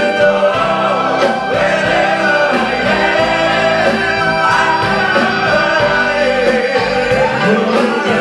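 Live band music with a large group of voices singing together in chorus, over guitar and band accompaniment.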